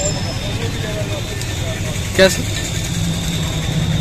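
A vehicle engine idling with a steady low hum, under faint background voices; one short spoken word cuts in about two seconds in.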